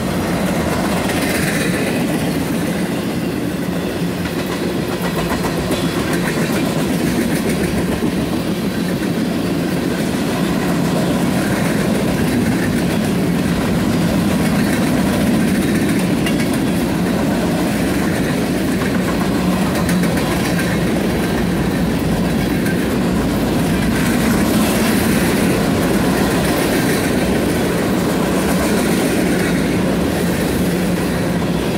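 Freight cars of a BNSF mixed freight train rolling past at speed: the steady, loud noise of steel wheels running on the rails.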